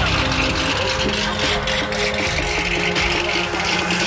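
Car engines idling in a line of waiting cars, a steady mechanical background.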